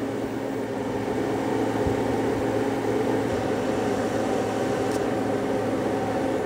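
Steady whir and hum of an electric fan and heater running off an inverter as a heavy load, about 55 amps drawn from a LiFePO4 battery pack during a capacity test. Several steady hum tones sit under the whir.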